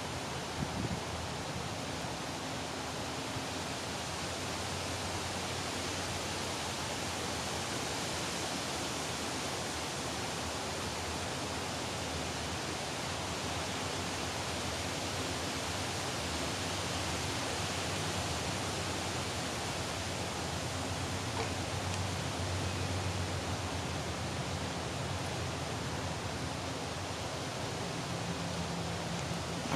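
Steady, even rushing noise of the forest outdoors, unchanging throughout, with no distinct events.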